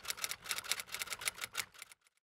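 Typewriter key-clicking sound effect laid under on-screen text as it types itself out: a rapid run of sharp clicks, about ten a second, that stops abruptly near the end.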